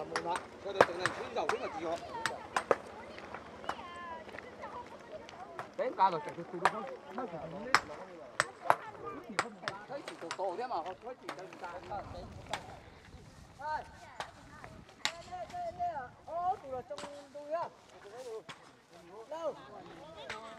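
Irregular sharp clicks and knocks of loose stones striking one another, at times several a second, with quiet talking in the background.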